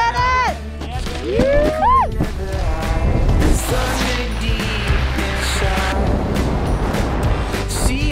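Background music with a steady low bass and drum hits; a sliding melody line rises and falls in the first two seconds.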